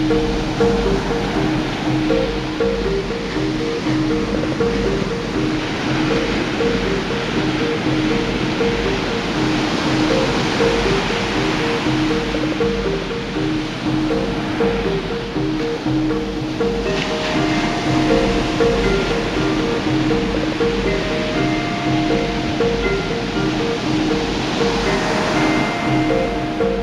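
Ocean surf breaking and washing on a beach, mixed with soft new age music: a repeating figure of low notes throughout, with higher held notes joining about two-thirds of the way through.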